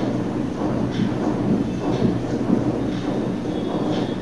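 Marker pen writing on a whiteboard, faint short strokes about once a second over a steady low rumble.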